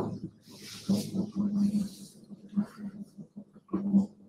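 Faint wordless voice sounds on a video call: short low hums and breaths broken up over a few seconds, with a few soft clicks, the sharpest near the end.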